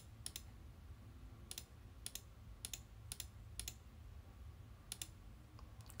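A computer mouse clicking about seven times at uneven intervals, some clicks in quick pairs, over a faint low hum.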